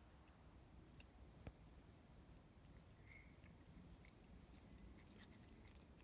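Near silence with a few faint scattered clicks, one a little louder about one and a half seconds in: a common brushtail possum quietly chewing carrot.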